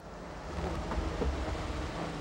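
A vintage bus's engine rumbling as it pulls in, with a steady hiss over it, getting louder in the first half second and then holding.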